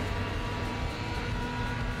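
Steady low rumble of distant engine noise, with a faint steady hum over it and no distinct events.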